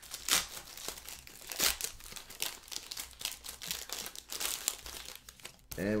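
A foil trading-card pack being torn open by hand and its wrapper crinkled, a run of quick, uneven crackles.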